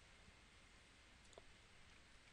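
Near silence: faint room hiss with one or two faint clicks a little past the middle, from a computer mouse as a web page is scrolled.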